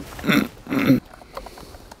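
A man coughing twice in quick succession, two short bursts about half a second apart.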